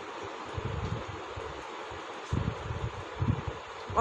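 Ballpoint pen writing on a notebook page: soft, irregular rubbing and low bumps of the hand and paper over a steady background hiss.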